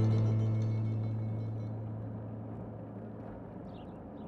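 Background music's low held note, the tail of a guitar passage, fading out steadily over the faint hum of a car cabin.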